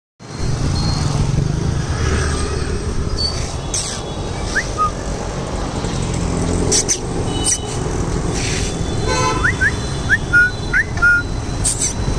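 Steady low rumble of street traffic picked up on a handheld phone, with scattered handling clicks. Near the end comes a quick run of short, high, rising chirps.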